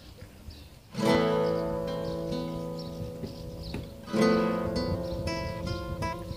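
Solo acoustic guitar: after a quiet first second, a chord is strummed and left to ring and fade, with a few single plucked notes, then a second strummed chord about three seconds later, followed by more picked notes.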